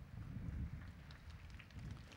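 Faint open-air ambience: a low, steady rumble with a few soft ticks.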